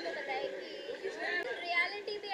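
Indistinct chatter of several voices talking at once in a room, with no single clear speaker.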